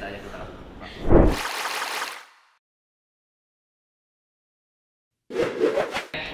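Casual group talk, then a short, loud, breathy burst of noise about a second in, after which the sound drops out to total silence for about three seconds before talking resumes near the end.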